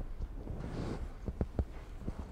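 Quiet room tone with a few short, faint taps and clicks, clustered in the second half.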